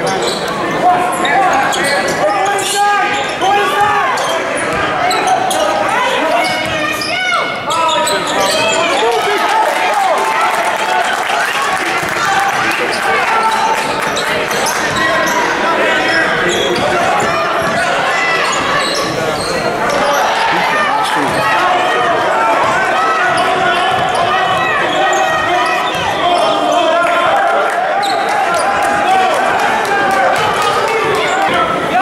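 Basketball game sound in a gym: a ball bouncing on the hardwood court amid steady crowd chatter, with scattered short knocks.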